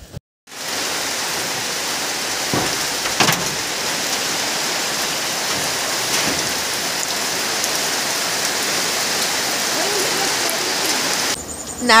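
Steady rain falling: a dense, even hiss with a couple of sharper drip strikes about three seconds in. It cuts off abruptly near the end.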